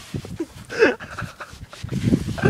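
A person breathing hard, with a short vocal sound that falls in pitch about a second in, over rustling and handling knocks as a phone camera is jostled.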